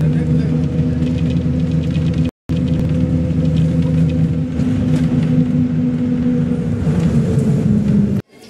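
Bus engine droning steadily inside the moving bus's cabin, a low hum holding one pitch. The sound cuts out completely for a moment a little over two seconds in.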